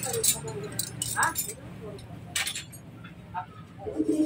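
A few light clicks and small rattles as wires and relay terminal pins are handled and pushed into a scooter's wiring harness, over a steady low hum.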